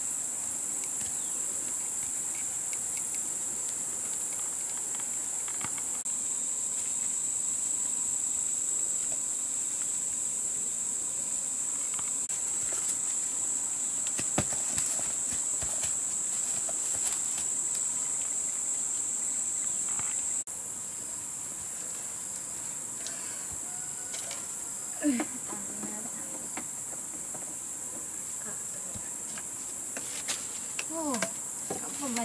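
Steady, high-pitched drone of a forest insect chorus, with scattered light clicks and rustles. The drone drops in level about two-thirds of the way through. A few short pitched calls come in near the end.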